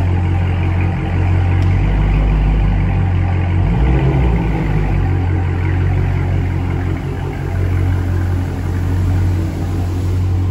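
Dodge Charger Scat Pack's 6.4-litre HEMI V8 idling through a mid-muffler-delete exhaust, a deep steady note with a brief shift about four seconds in.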